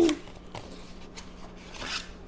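Coloured pencils clicking and rubbing against one another as someone rummages through them for a green one, with a brief rustle near the end.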